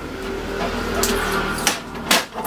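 Plastic paper cassette of a Canon MF241d laser printer sliding in against a steady mechanical whir, with clicks near the end as the tray seats and latches.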